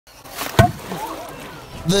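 A crocodile lunging out of water with sloshing and splashing, and one sharp snap about half a second in, the loudest sound, as its jaws shut on the bait; faint voices follow.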